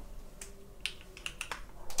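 Light, uneven typing on a custom mechanical keyboard with an aluminium case: about ten short, crisp keystroke clicks.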